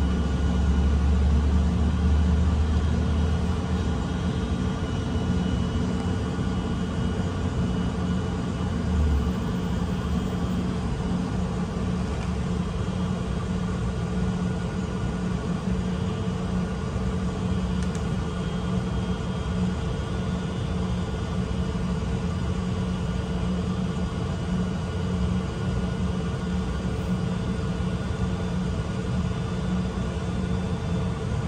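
City bus heard from inside the passenger cabin while underway: a steady engine and drivetrain hum with road noise. A deep low drone runs for the first nine seconds or so as the bus pulls away from a stop, then eases off.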